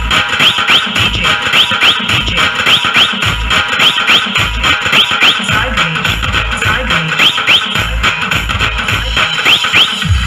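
Telangana dappu folk beat in a DJ dance mix: a steady, loud beat of heavy bass thumps with short rising whistle-like chirps, often in pairs, repeating over it.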